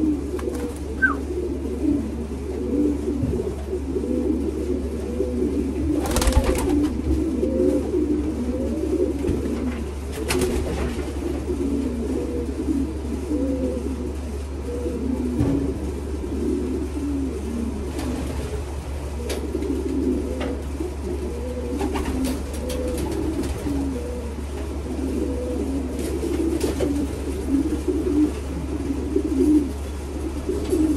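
Many racing pigeons cooing continuously inside a loft, their calls overlapping without pause over a steady low hum. A few brief sharp rustles or knocks stand out, the loudest about six seconds in.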